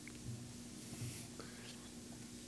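Teenagers whispering faintly as they confer over a quiz answer, over a low steady hum.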